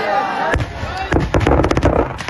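Firecrackers packed in a burning Ravana effigy going off in a rapid, loud string of bangs and crackles, starting about half a second in.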